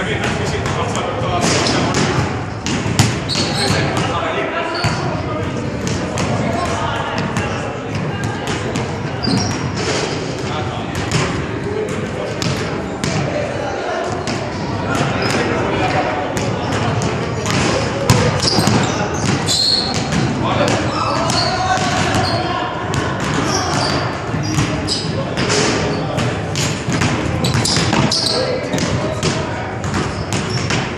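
Basketballs being dribbled on a hardwood gym floor, repeated bounces echoing in a large hall, with voices in the background.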